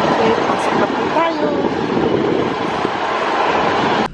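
Loud, steady city street noise, a dense din of traffic and crowd, with faint voices of passers-by in it during the first second or so.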